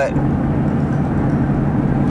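Steady road and engine noise inside the cabin of a moving vehicle, a low drone under a broad rush.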